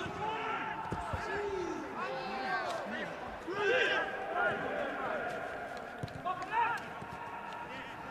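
Football players calling out to each other on the pitch, single shouts standing out over a quiet background, with a few thuds of the ball being kicked.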